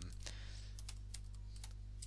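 Computer keyboard typing: a run of separate keystroke clicks over a steady low electrical hum.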